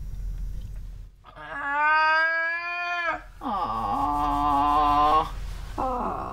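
Wordless held 'aah' voice sounds: two long calls of about two seconds each, the second dropping in pitch as it starts, then a third beginning near the end. These are vocal sounds being shared and echoed back and forth between an autistic child and an adult as part of intensive interaction.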